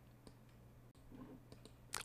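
Near silence: room tone with a faint steady low hum and a few soft, scattered clicks.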